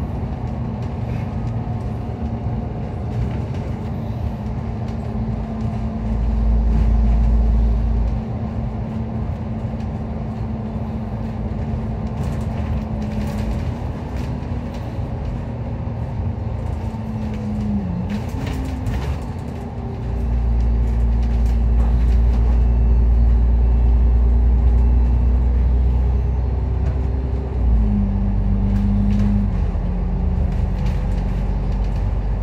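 Interior of a KMB double-decker bus under way: steady engine and drivetrain hum with road rumble. The engine note dips and picks up again about two-thirds of the way through, and a deep rumble swells twice, briefly early and for several seconds later on.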